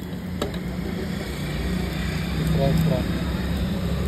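A steady low hum with faint voices in the background and a light click about half a second in.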